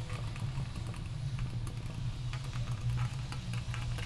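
Scissors snipping through plastic garden mesh: a run of small, irregular clicks as the strands are cut, over a steady low hum.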